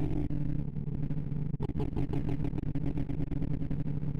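Slow Sort audibly sorting in a sorting-algorithm visualizer: a dense, fast stream of synthesized beeps, one per array access, each pitched by the value of the bar being touched. Working among the smallest values, it blurs into a low, steady, engine-like buzz.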